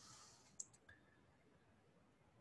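Near silence, with one faint computer-mouse click a little over half a second in and a fainter tick just after.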